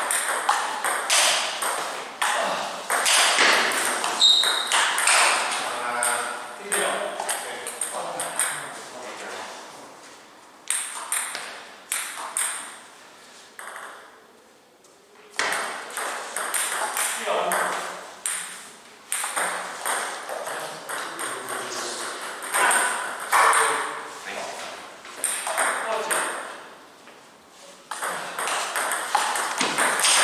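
Table tennis rallies: the celluloid ball clicking off bats and the table in quick back-and-forth strokes, with short pauses between points.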